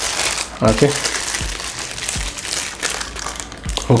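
Clear plastic wrap crinkling steadily as hands work it around a camera lens to unwrap it.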